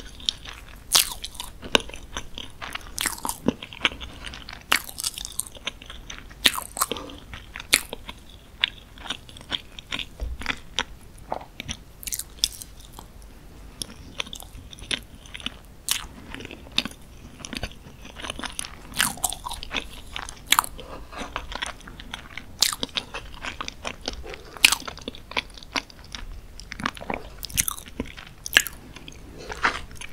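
Close-miked eating of moist dark chocolate cake in chocolate sauce: sticky, wet chewing with many sharp mouth clicks, and a metal fork cutting pieces from the cake now and then.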